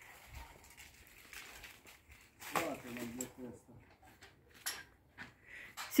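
Mostly quiet, with a faint voice for about a second a little past halfway and a few soft knocks.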